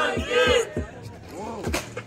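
A shouted vocal answer, "Sangue!", in a rap-battle call-and-response, over a hip-hop beat from a portable speaker with deep, falling kick drums. There is a sharp hit near the end.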